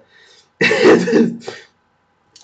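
A man clearing his throat once, lasting about a second.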